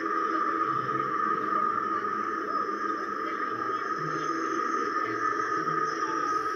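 Overlapping soundtracks of several videos playing at once through computer speakers: a dense, steady jumble of sound with no breaks.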